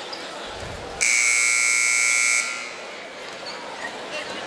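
Arena scoreboard buzzer sounding one steady blast of about a second and a half, starting about a second in and cutting off suddenly: the signal that the timeout is over and play resumes.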